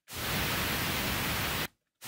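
Pink noise playing from a Pro Tools session, fading up over about a quarter second under the software's automatic fade-in, then holding steady as a full-range hiss before cutting off suddenly near the end.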